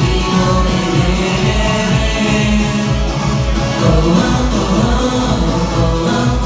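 A singer singing a pop song through a microphone and PA over an amplified backing track, with a steady bass beat.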